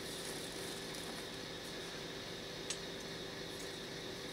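Steady faint hiss of room background noise, with one small sharp click about two-thirds of the way through.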